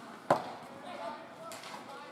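A single loud, sharp crack of an impact in ice hockey play, about a third of a second in, ringing briefly in the rink. Voices of players and spectators carry on around it.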